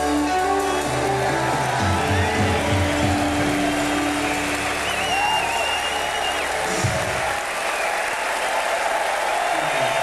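Rock band's closing chord on electric guitars and bass ringing out over audience applause and cheering, with a long high whistle about five seconds in. The band stops about seven seconds in, leaving only the applause.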